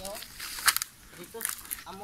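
Leaves and twigs crackling and rustling as someone pushes along an overgrown forest path, with a sharp cluster of snaps a little over half a second in. Faint voices talk in the background.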